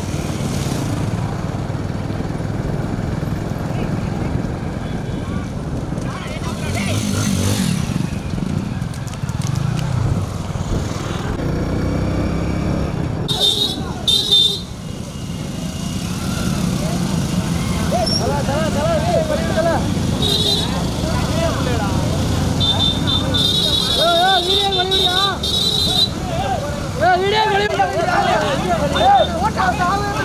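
Motorcycle engines running, then short horn beeps about halfway through and several more in the later part, with men shouting over them in the second half.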